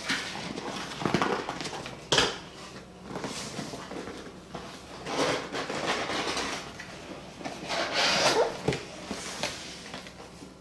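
A cardboard shipping box being opened by hand: its flaps pulled up and the contents slid out, in several rustling, scraping bursts with a sharp snap about two seconds in.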